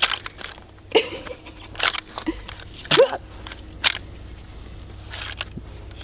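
Scattered sharp metallic clicks and knocks from an M1 Garand's action as an en-bloc clip is pressed into the receiver by hand and does not seat, about half a dozen spread through the few seconds, with a couple of short grunts among them.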